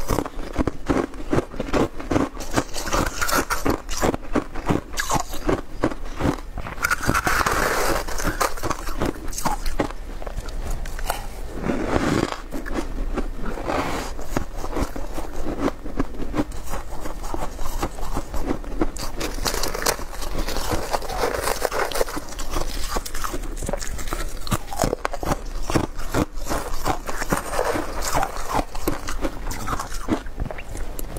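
Close-miked crunching and chewing of freezer frost and soft ice: a dense, unbroken crackle of small crunches, with a spoon now and then scraping frost off the ice block.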